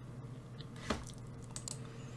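A faint click about a second in and a few softer ticks shortly after, over a low steady room hum.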